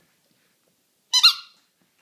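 A squeaky dog toy squeaking once, short and high-pitched, about a second in, as the dog bites it.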